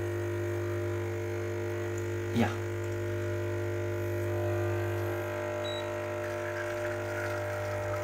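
Lelit Mara X espresso machine's vibration pump humming steadily while an espresso shot extracts through a bottomless portafilter, the flow being ramped up with a flow-control device on the group head.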